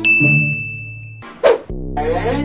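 A cartoon 'ding' sound effect: one bright chime that rings for about a second and fades. About a second and a half in comes a short, loud whoosh.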